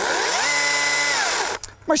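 Battery-powered toy chainsaw running briefly: a buzzing whine that winds up in pitch, holds steady for about half a second, then winds down and stops.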